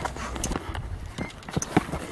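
Quick, irregular footsteps and scuffs on the ground as two people grapple, about five sharp knocks, the loudest near the end.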